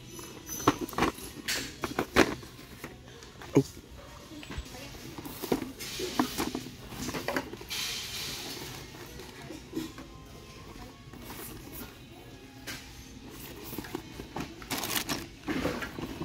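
Background music playing in a shop, with cardboard board-game boxes being handled on a shelf, giving several short sharp knocks.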